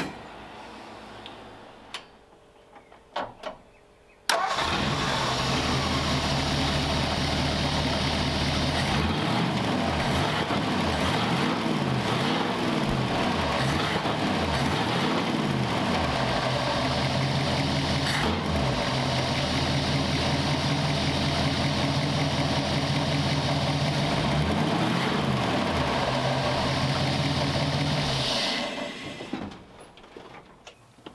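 Ford Y-block V8 starting up about four seconds in, then idling with repeated blips of the throttle, each one rising and falling back to idle. It shuts off near the end. The revs dropping cleanly back to idle show the new gas pedal linkage and its return spring working.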